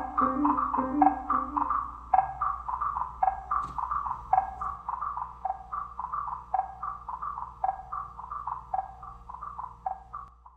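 Wooden wood blocks struck with yarn mallets in a quick repeating pattern, joined by piano for the first two seconds. The strokes then carry on alone, getting steadily quieter, and stop right at the end.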